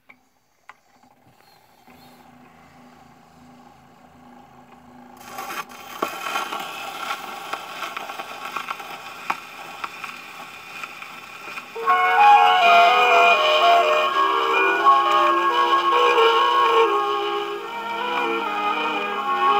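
A 78 rpm shellac record starting to play: a couple of sharp clicks at the start, a faint hum, then surface hiss and crackle from about five seconds in. About twelve seconds in, a 1951 orchestra's introduction to a moderate-tempo Italian song starts loud, with the disc's crackle beneath it.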